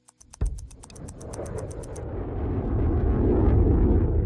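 Fast, even ticking of a mechanical watch, about eight ticks a second, stops about two seconds in. Beneath it, from about half a second in, a deep rumbling roar of a passing jet aircraft swells and is loudest near the end.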